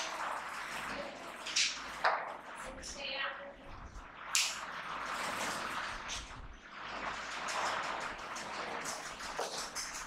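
Indistinct murmur of several voices in a room, with no clear single speaker, broken by a few short, sharp hissy noises.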